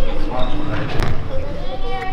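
Girls' voices echoing in a large sports hall, with a ball bouncing on the hall floor; one sharp bounce stands out about a second in.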